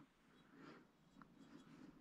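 Near silence: room tone with a few faint soft scuffs of a hand moving over carpet.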